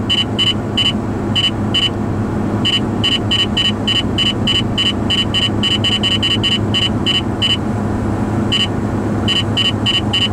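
Valentine One radar detector sounding its Ka-band alert: a high-pitched beep repeated about three times a second, pausing briefly twice, over steady road and engine noise inside the car. The beeping signals Ka-band police radar ahead.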